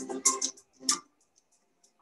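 Quick, light ticking with a soft sustained tone under it in a film trailer's soundtrack, dying away about a second in and leaving near silence.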